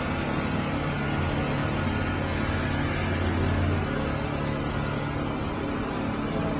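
Steady low motor rumble with a deep hum, strongest in the middle and easing off about four seconds in.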